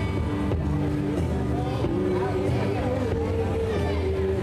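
Indorock band playing live: electric guitars over a bass line, with held notes that bend and waver.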